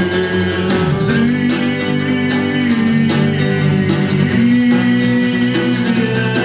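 A live song: a man singing with guitar accompaniment, the music steady and loud throughout.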